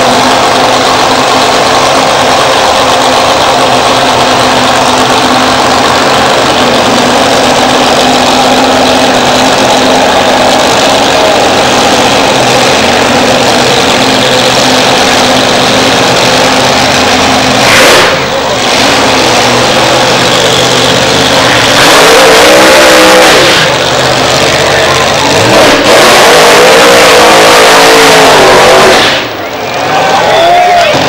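Supercharged nitro-burning drag racing engines, very loud: a steady idle, then sharp blips of the throttle around 18 s and 22 s and a long full-throttle rev from about 26 s to 29 s, as in a burnout. The sound is loud enough to overload the camcorder microphone.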